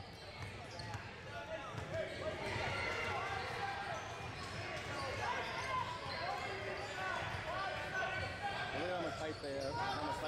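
Basketball game sounds on a hardwood gym floor: the ball dribbling and sneakers squeaking, under overlapping shouts and chatter from players and spectators.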